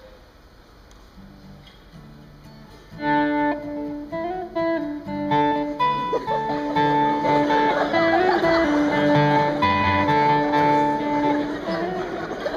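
A live band starts a song about three seconds in: held melody notes over a bass line, the music growing fuller and louder a few seconds later.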